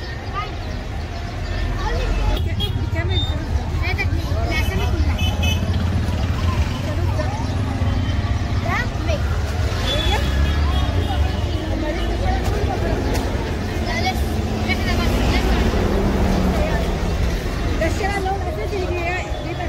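Busy street crowd: many voices talking over one another, with a steady low rumble underneath throughout.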